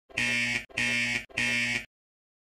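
A cartoon sound effect: three even, buzzing blasts of about half a second each, with steady pitch and short gaps between them.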